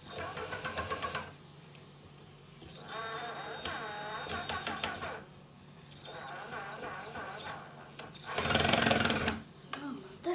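Cordless drill-driver running in four short bursts as it drives small screws into an OSB panel, its motor whine wavering with the load. The last burst, near the end, is the loudest.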